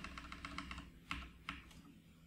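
Faint typing on a computer keyboard: a quick run of keystrokes through the first second, then a few single key presses.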